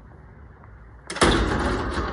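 A heavy wrought-iron-and-glass door being pulled at or opened: a sudden loud noise about a second in that fades over the next second or two.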